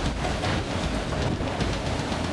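Steady rushing noise of wind and sea, heard inside a racing yacht's cabin while it sails offshore.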